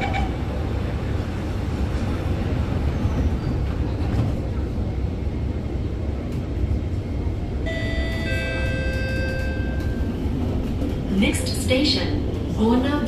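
Inside an Alstom MOVIA R151 metro car pulling away and running: a steady low rumble from wheels and running gear. About eight seconds in, a cluster of steady tones at several pitches sounds for about three seconds.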